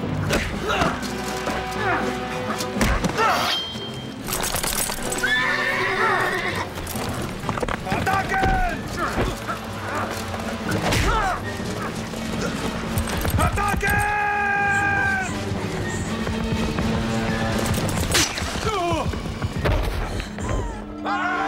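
Film fight soundtrack: dramatic music under the grunts and shouts of men struggling, with sharp blows and several horse whinnies.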